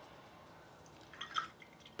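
A paintbrush rinsed in a glass jar of water: a few short watery splashes and drips a little over a second in.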